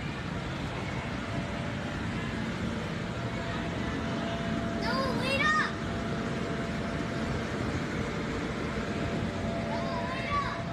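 Steady rushing air noise with a constant hum, the sound of the electric blower that keeps an inflatable bounce house up. About five seconds in, a child's high voice calls out briefly over it.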